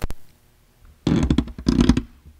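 Handling noise on a podium's gooseneck microphone: a sharp click at the start, then about a second of loud bumps and rubbing as the microphone is adjusted.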